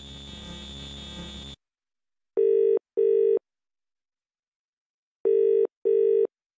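British telephone ringing tone heard down the line: two 'ring-ring' double pulses about three seconds apart, a call waiting to be answered. Before them a steady buzzing hum cuts off suddenly about a second and a half in.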